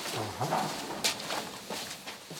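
Ornamental metal gate being swung open: a short, low creak from its hinges near the start, then a sharp click about a second in.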